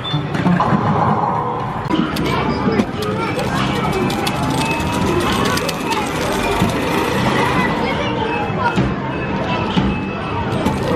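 Arcade ticket counter drawing a strip of paper tickets through its slot with a rapid clicking, over a busy arcade din of game music, electronic effects and voices.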